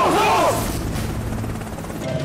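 A group of soldiers shouting a reply in unison for about the first half second, followed by a steady low rumble.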